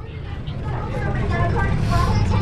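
A low rumble that grows steadily louder, with faint voices in the background.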